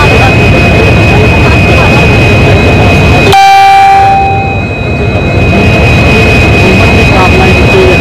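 Diesel locomotive engine running steadily close by, with a steady high whine through it; a short, loud train horn blast sounds about three seconds in.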